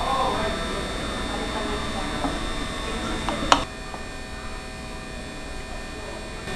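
Restaurant room tone: a steady electrical hum with faint voices. A single sharp click comes a little past the middle.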